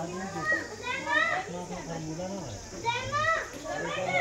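Children's high-pitched voices calling out and laughing in two short bursts, about a second in and again near three seconds in, over a man's lower speech.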